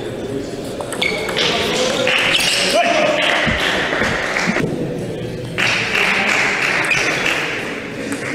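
Table tennis ball clicking off bats and table as a rally ends. From about a second in come loud shouts and cheering, in two stretches with a short lull between.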